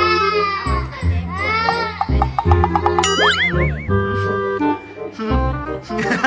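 A toddler wails in two long cries during the first two seconds over light background music. About three seconds in, a cartoon boing sound effect rises and wobbles, and the music carries on.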